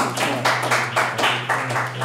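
A small audience applauding, hands clapping at about four claps a second, with a steady low electrical hum underneath.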